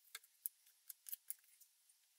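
Small cherry wood blocks being set down on a mat and knocked against each other: about six or seven faint, sharp, irregular clicks.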